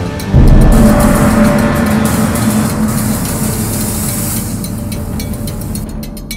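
Loud outro sound effect: a sudden hit about a third of a second in, then a sustained sound that slowly fades.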